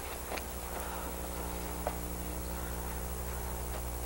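Steady low electrical hum on the recording, with a couple of faint short sounds and no clear voices.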